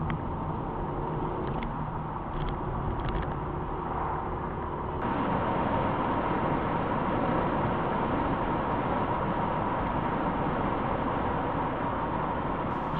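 Steady engine and tyre noise inside a moving car's cabin, as picked up by a windscreen dashcam. About five seconds in it gets louder and steadier as the car travels faster on an open dual carriageway.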